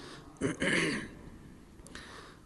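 A man clearing his throat once, close to the microphone, about half a second in and lasting well under a second.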